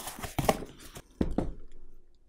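Hands opening a cardboard shipping box: a few light knocks and rustles of the cardboard flaps.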